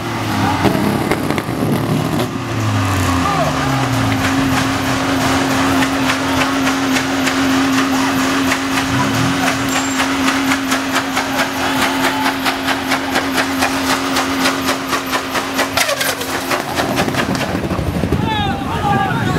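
Car engine revving, then held at one steady high note for about fourteen seconds while the car spins its tyres in a burnout, raising tyre smoke. A fast, even pulsing runs through the second half.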